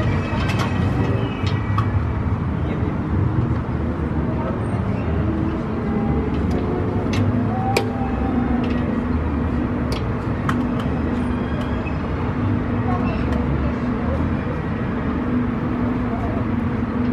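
Outdoor amusement-park background noise: a steady low rumble with scattered sharp clicks, and a steady hum that comes in about six seconds in.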